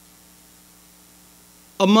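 Steady electrical mains hum picked up by the microphone and sound system, two fixed low tones with no change. A man's voice starts near the end.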